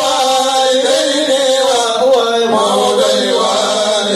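Men's voices chanting an Islamic devotional chant in long, held melodic phrases, the pitch sliding slowly between notes and dropping about two and a half seconds in.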